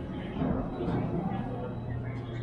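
Indistinct voices echoing in a large indoor hall, over a steady low hum.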